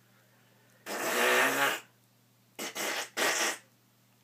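A man making a fake fart noise: one long, pitched rasp lasting about a second, then three short ones in quick succession.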